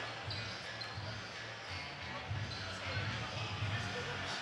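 A basketball being dribbled on a hardwood gym floor: a steady series of low, echoing bounces, with background voices in the large hall.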